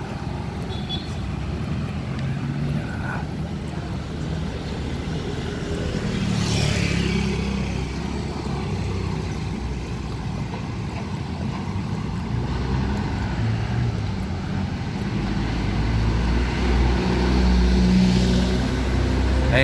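Street traffic: a steady engine rumble from vehicles on the road, with one vehicle passing close about six to seven seconds in. The low rumble grows louder near the end.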